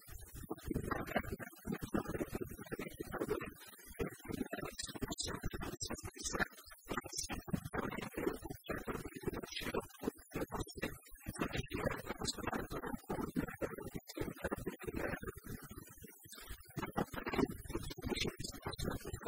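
A woman speaking Italian in continuous talk.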